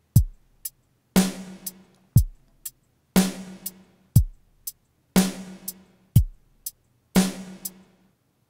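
Computer-generated drum kit (ToneJS in a web browser) looping a standard rock beat: kick drum on beat one, snare on beat three and hi-hat on every beat, about two hi-hats a second. Four bars play, then it stops.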